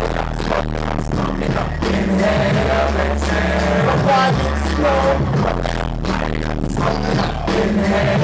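Loud live hip hop through a club PA: a deep bass line in long held notes and drum hits, with a rapper's voice over the beat.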